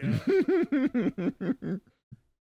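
A burst of laughter: a quick run of about seven 'ha' pulses that fade out over nearly two seconds.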